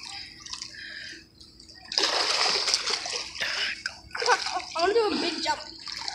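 Swimming-pool water splashing and sloshing as people move through it, loudest in a burst about two seconds in that lasts about a second, with voices speaking briefly near the end.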